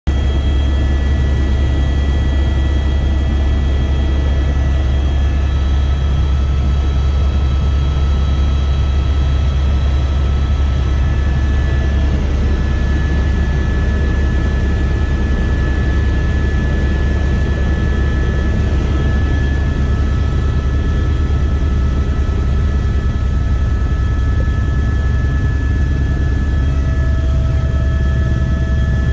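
Helicopter cabin noise in level flight: a loud, steady low drone from the rotor and engine, with several thin, steady high whining tones from the turbine held over it.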